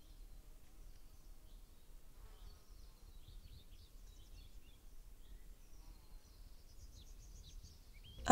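Near silence: faint background hiss with scattered faint, short high chirps.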